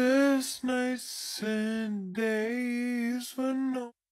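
A sung vocal sample played back slowed down in Cubase's Sampler Track with its old warp (time-stretch) algorithm: long held notes in one voice, with a short hiss about a second in. It cuts off just before the end.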